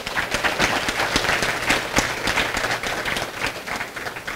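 Audience applauding, many hands clapping together, the applause thinning out near the end.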